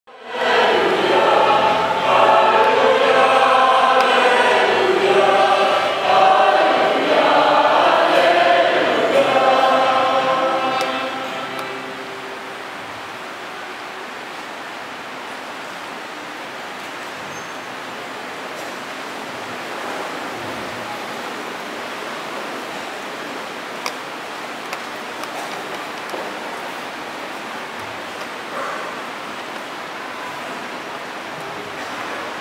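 A choir singing, fading out about eleven seconds in; after that, only a steady room hiss with a few faint clicks.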